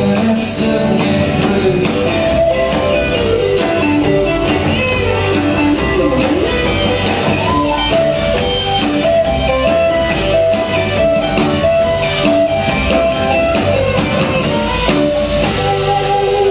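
A live folk-rock band playing with a steady drum beat: strummed acoustic guitar, electric guitar, upright bass and drum kit.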